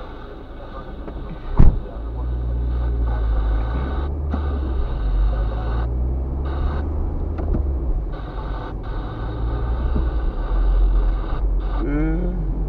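A car's engine and road noise heard from inside the cabin as the car pulls away from a standstill and drives along a wet street, the engine note shifting in steps a few times. A single sharp knock about a second and a half in is the loudest sound.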